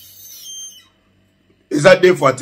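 A man's voice, silent at first, then speaking again near the end. Faint, thin high-pitched tones fade out within the first second.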